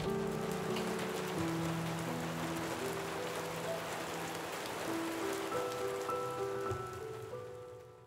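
Steady rain falling, an even patter, with soft background music of slow held notes over it; both fade out near the end.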